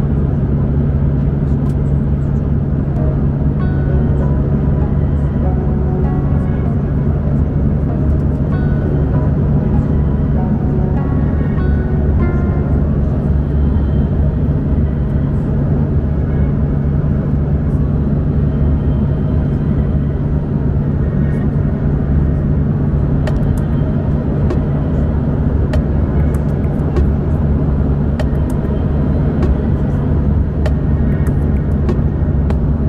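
Steady cabin drone of an Embraer 190 regional jet in cruise, heard from a window seat: a loud, unbroken low hum of engines and airflow.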